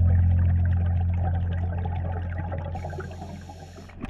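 Underwater sound through a camera housing: water noise with small ticks, under a low steady hum that fades away slowly.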